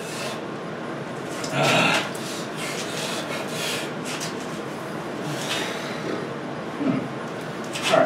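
Hard breathing and strained exhalations from a man bending a thick steel bar by hand, with cloth pads rubbing against his hands and the bar. A loud breath comes about two seconds in and a grunt near the end.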